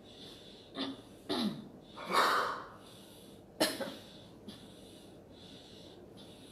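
A person coughing four times in about three seconds. The third cough is the longest and loudest, and the last is short and sharp.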